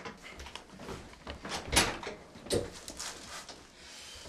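Handling noises from a padded chiropractic tilt table as a person settles back against it and its headrest is adjusted: soft rustling and small knocks, with two sharper clunks just before and just after the halfway point.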